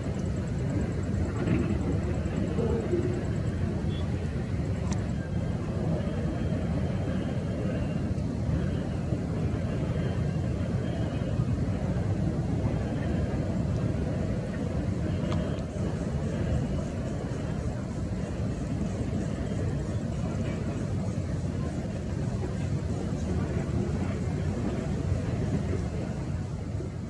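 Distant jet airliner, an Airbus A321neo on CFM LEAP-1A engines, heard as a steady low rumble while it slows on the runway after landing.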